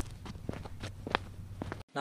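Footsteps on a hard floor: a handful of light, irregular steps over a faint low hum. The sound cuts off just before the end.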